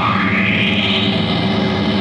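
Distorted electric guitar played live through an effects unit, its tone sweeping slowly up and then back down over a steady low note.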